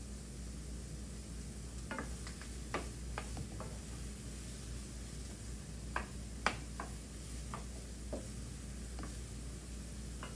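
Chopped yellow onion sautéing in olive oil in a skillet, sizzling steadily while being stirred with a spoon that knocks and scrapes against the pan now and then, the sharpest knock about six and a half seconds in.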